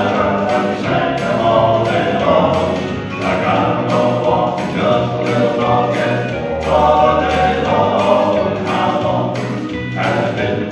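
Male southern gospel quartet singing in four-part harmony, with a low bass voice under the chords, over an accompaniment with a steady beat of about two ticks a second.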